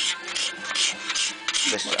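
Hand-held steel cabinet scraper, deliberately kept blunt, scraping along a wooden Telecaster guitar neck in about five quick strokes, each a short rasping scrape. It is taking off fine scratch marks as the neck is reshaped by hand.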